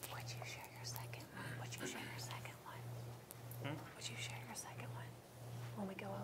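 Low whispered talk, soft and broken, over a steady low hum that swells and fades in a regular beat about one and a half times a second.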